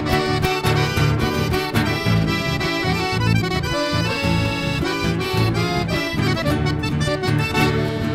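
Chamamé instrumental passage: a button accordion plays the melody over strummed acoustic guitars and electric bass, with no singing.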